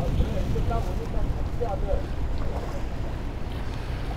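Strong wind buffeting the microphone on an open boat deck: a steady low rumble, with faint voices underneath.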